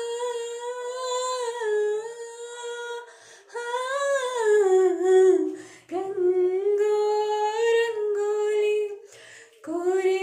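A woman singing unaccompanied: long wordless held notes and smooth glides between them, with brief breaks for breath about three seconds in, near six seconds, and for about half a second near nine seconds.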